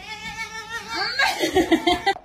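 Domestic cat meowing over and over as it walks, one meow with each step; the meows grow louder and come quicker near the end.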